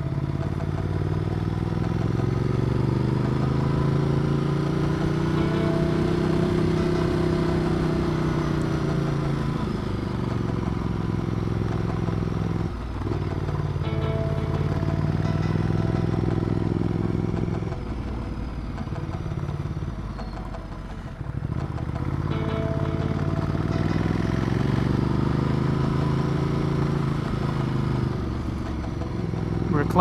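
Ducati Multistrada 1200's L-twin engine pulling uphill. Its note rises and falls in long swells with the throttle, and dips briefly three times as the throttle closes or it shifts, over steady wind and road noise.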